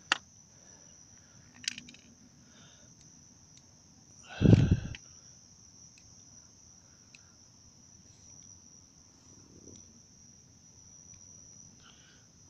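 Steady high-pitched chirring of crickets, with a loud thump of handling noise about four and a half seconds in and a few faint clicks.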